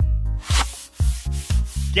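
Cartoon rubbing and swishing sound effects, a noisy swish followed by a couple of short strokes, over background music with a low bass line.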